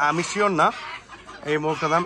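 Chickens clucking in short calls, with a quieter stretch around the middle; a man's voice says a word or two over them.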